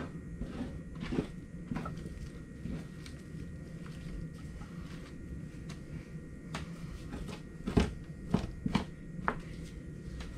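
Two-handled fleshing knife scraping fat and membrane off a beaver pelt on a fleshing beam, in irregular strokes, with a few sharper clicks near the end.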